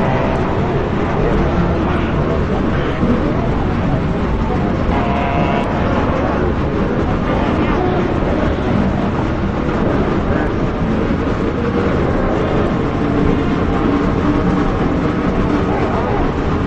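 Dense, murky ambient noise soundscape: a loud, steady wash of rumbling noise with faint, smeared tonal fragments drifting through it and no clear melody or beat.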